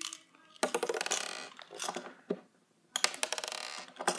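Small candies rattling against a hollow plastic toy as it is filled, in two quick clattering bursts: one about half a second in and another near the end.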